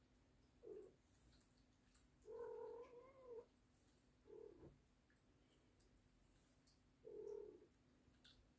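A cat meowing faintly four times: three short meows and one longer, drawn-out meow lasting about a second, a little over two seconds in.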